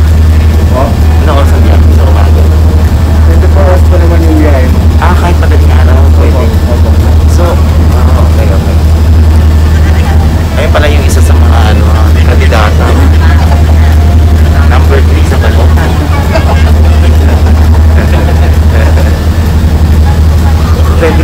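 Steady, loud low drone of a passenger ferry's engine heard from inside the cabin, with voices talking over it.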